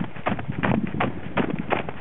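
Running footsteps crunching in snow, quick and uneven, over a steady rush of noise on the microphone.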